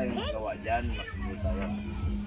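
High-pitched children's voices talking and calling over one another, with a steady low hum underneath.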